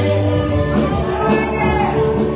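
Live gospel praise-and-worship music: a group of singers with keyboard accompaniment over a steady beat.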